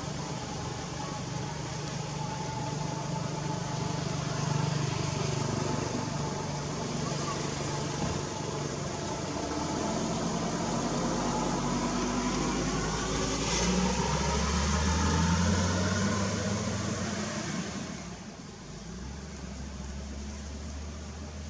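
Steady outdoor background noise with a motor vehicle running, its low rumble growing louder past the middle and dropping away about two seconds before the end, with faint indistinct voices.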